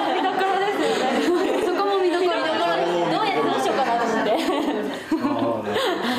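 Several women's voices talking over one another, with laughter at the start.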